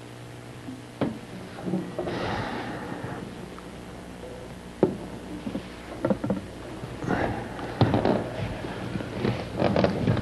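A cellist moving about with his cello after playing: a few sharp knocks, the loudest about a second in and another near five seconds, with shuffling and rustling as he lays the cello on the floor and sits down. A low mains hum runs underneath.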